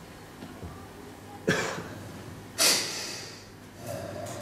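A man breathing out sharply twice, two short sudden bursts of breath about a second apart, the second trailing off.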